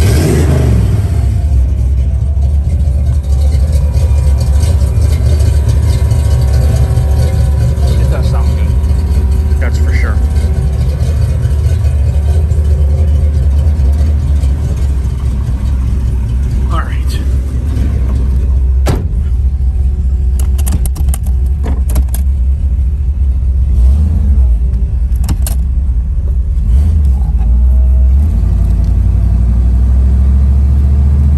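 1971 Chevrolet Chevelle's 454 big-block V8 running with a steady low rumble; a rev at the very start drops back down.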